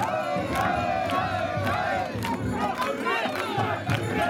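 A crowd of mikoshi bearers shouting together in a rhythmic carrying call as they heave the portable shrine, with sharp claps about twice a second.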